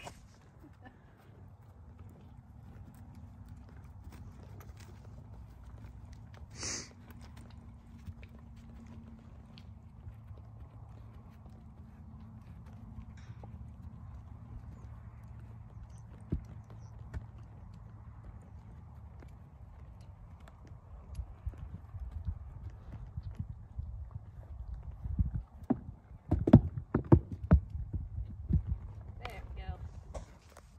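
A gaited horse's hoofbeats as it walks under a rider over grass and dirt, over a steady low rumble. A brief hiss comes about seven seconds in. The hoof strikes grow louder and sharper in the last several seconds as the horse comes close.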